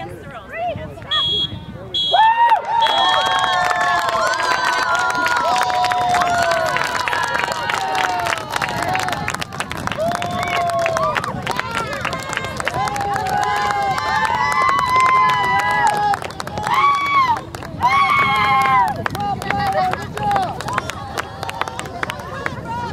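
Spectators cheering and shouting with many overlapping voices, and clapping, breaking out about two seconds in and carrying on throughout: the celebration of a goal.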